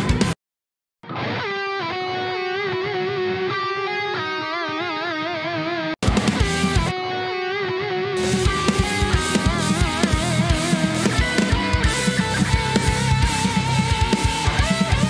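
Progressive metal mix playback that stops briefly, then resumes with a distorted electric lead guitar alone, gliding between notes with wide vibrato. About six seconds in, the drums and the rest of the band join under the same lead line.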